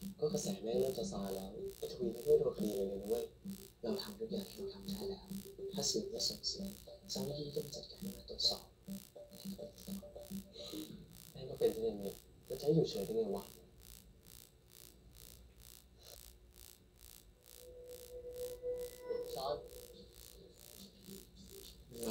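Quiet drama-series audio: Thai-language dialogue over soft electronic background music, dropping almost to silence for a few seconds past the middle.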